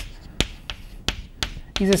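Chalk striking and tapping on a blackboard while a formula is written: about six short, sharp taps spread over less than two seconds.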